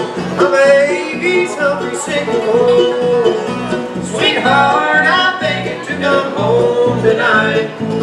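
Live bluegrass band playing a song on banjo, mandolin and acoustic guitar, with a steady strummed rhythm underneath.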